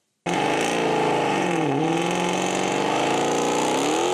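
Supercharged 5.7 Hemi V8 of a Dodge Charger held at high revs during a burnout with the rear tyres spinning. It starts abruptly, and its pitch sags about a second and a half in, then climbs again.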